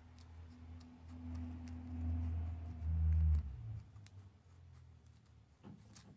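Scissors snipping through cotton macramé cord, a few faint scattered clicks. Under them a low rumble swells to its loudest about three seconds in, then fades.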